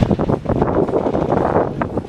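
Wind blowing across the camera's microphone, a loud, uneven noise.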